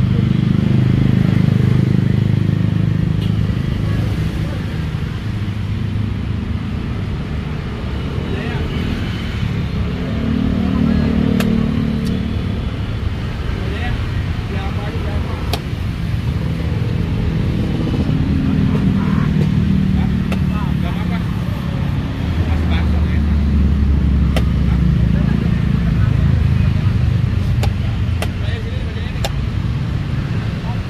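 Road traffic running past, engine hum rising and fading in several swells as cars and motorcycles go by, under a murmur of voices. A few sharp clicks stand out.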